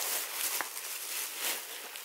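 Plastic shopping bag and plastic-wrapped packaging rustling and crinkling unevenly as an item is pulled out and handled.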